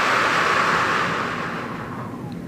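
A woman's long, slow exhale through pursed lips, a steady hiss that slowly fades. It is a calming breathing exercise: breathing out gently as if blowing bubbles through a straw.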